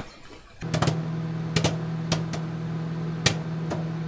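Channel intro sting: a steady low hum sets in about half a second in, with sharp clicks or hits over it every half second to a second.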